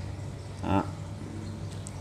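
Quiet room tone with a steady low hum, broken once by a single short spoken word.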